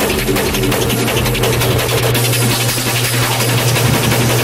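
Hard techno in a breakdown: the kick drum is out, leaving a steady low bass drone under high percussion.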